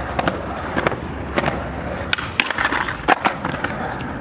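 Skateboard wheels rolling on concrete with a steady low rumble and scattered sharp clacks of the board. A little past the middle the rolling rumble stops for about half a second and comes back with a loud clack as the board lands again.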